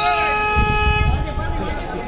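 A horn sounds one steady blast that cuts off about a second in, with voices shouting over it.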